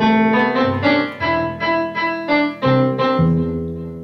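Two electronic keyboards played together in a soft piano-like tone. A melody of evenly paced notes, about three a second, runs over held bass notes that change a few times.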